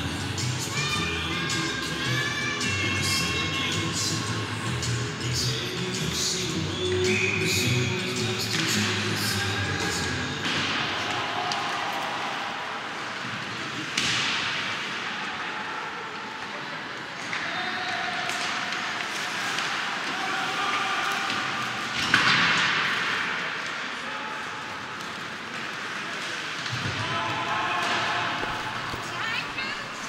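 Ice hockey rink during play: arena PA music for the first several seconds, then sharp bangs of the puck or players hitting the boards about 14 s and 22 s in, the second the loudest. Players' shouts and crowd voices come over the ice noise.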